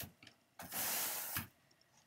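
A hand brush stroked across wool fiber on a blending board's carding cloth, a long brushing hiss of about a second that smooths and evens out the fiber layer.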